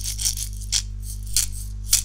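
Homemade shaker, a glass jar of dried black beans, shaken by hand in about five short shakes, the beans rattling against the glass like maracas. The loudest shake comes near the end.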